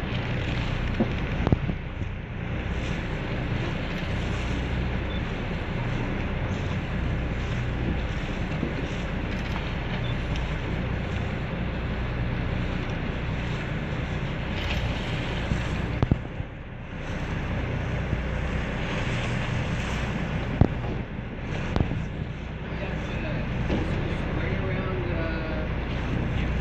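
Wind buffeting the microphone over the steady low drone of a boat's engine, with a few brief knocks.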